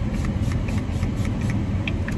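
Steady low rumble of a car running, heard from inside the cabin as it moves. Faint, quick hisses of a setting spray being pumped come several times.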